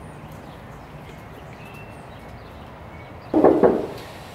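A faint steady low hum, then near the end a dog barks twice in quick succession, loudly.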